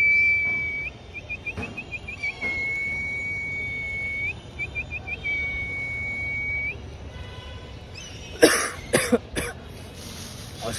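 A person whistling one steady high note, broken twice by runs of quick short chirps, for about seven seconds. A few short harsh bursts, like coughs, follow near the end.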